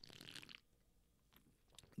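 Near silence, with faint sipping and swallowing in the first half second as two men drink, one from a beer can and one from a water bottle.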